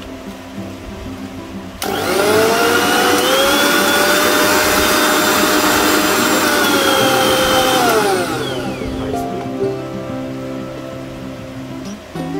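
Usha Colt MG-3053 500-watt mixer grinder motor switched on with an empty steel jar fitted. It comes on suddenly about two seconds in with a rising whine and runs loud and steady for about six seconds. It is then switched off and its whine falls away as it spins down.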